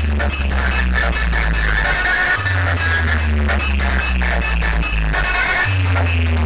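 Loud electronic dance remix played through stacked DJ speaker boxes, with long, deep bass notes that change twice under a dense beat.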